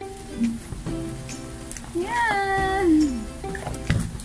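Background music: a song with steady backing notes and a singing voice holding one long note about two seconds in that slides down at its end.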